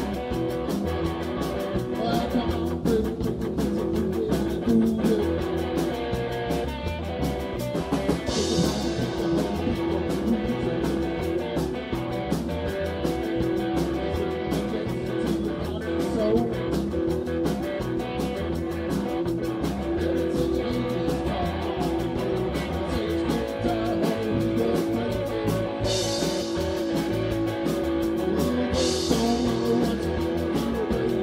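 Live rock and roll band playing: electric guitar, bass guitar and drum kit, with cymbal crashes about eight seconds in and twice near the end.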